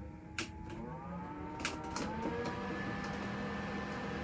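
Small electric fan on a homemade styrofoam-box air cooler speeding up after a few clicks at its controls. Its motor hum rises in pitch over about two seconds, then settles into a steady whine.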